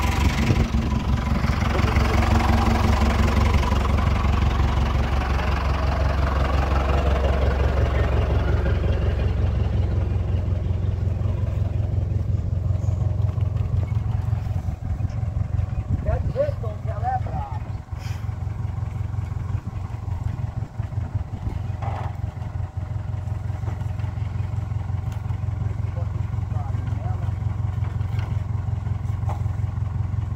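A truck's engine idling steadily, strongest in the first few seconds, with a brief wavering pitched sound about halfway through.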